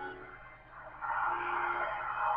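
Dark, suspenseful film score: held tones fade away, then about a second in an airy, rushing swell of sound comes in and stays loud.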